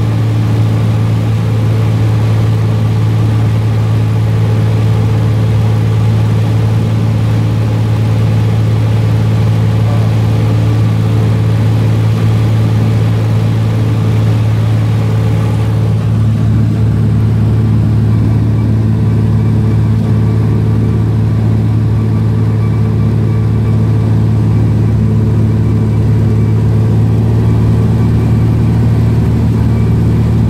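Cessna 172's four-cylinder piston engine and propeller droning steadily in cruise, heard inside the cabin as a deep, even hum. The airy hiss over the hum lessens about halfway through.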